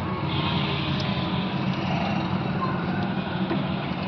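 A steady low mechanical hum under a constant background noise, with no distinct events.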